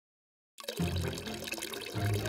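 Water pouring from a bottle, a cartoon sound effect, starting suddenly about half a second in, with background music under it.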